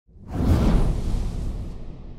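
A whoosh sound effect with a deep rumble beneath it, swelling up over the first half-second and then fading away.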